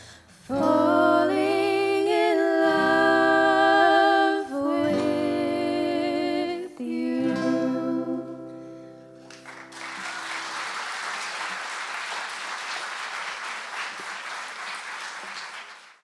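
Women singing the closing lines of a song over strummed acoustic guitar and ukulele, with the last chord ringing out about nine seconds in. Audience applause follows and fades out at the end.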